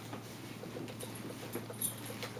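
Faint rustling and crinkling of plastic wrapping and light knocks as items are handled in a cardboard box, with a sharper crinkle near the end, over a low steady hum.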